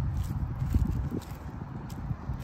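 Footsteps on soil and straw stubble, an irregular series of soft treads, over a low steady rumble.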